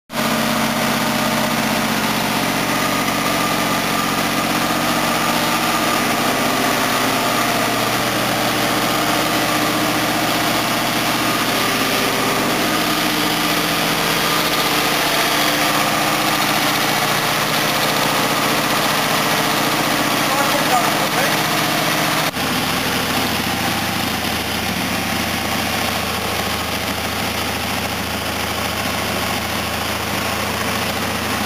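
GM LS3 6.2-litre V8 running steadily at a fast idle of about 1,600 rpm through a freshly built twin-muffler exhaust, warming up just after its first start. About two-thirds of the way through, the sound changes abruptly to a slightly quieter, deeper tone.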